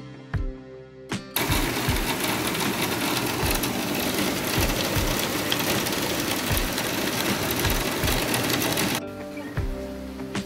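Heavy rain falling, a dense steady hiss that comes in about a second in and cuts off suddenly about a second before the end, over background guitar music with a steady beat.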